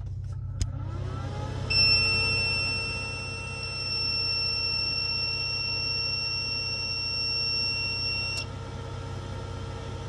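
Renogy inverter charger switching on: a click, then a rising whine as it powers up, then a long steady high-pitched beep lasting about seven seconds that cuts off suddenly. A steady hum remains under it.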